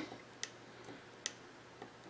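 Two light clicks of a small tactile push switch on a Lutron Maestro dimmer's circuit board, pressed to raise the brightness, with faint room tone between them.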